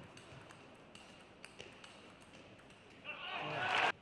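Table tennis ball clicking off bats and table in a string of sharp, irregular hits during a rally. About three seconds in, a loud burst of shouting and cheering rises and cuts off suddenly.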